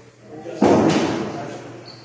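A sudden loud slam about half a second in, with a second knock right after, ringing on through the hall for about a second.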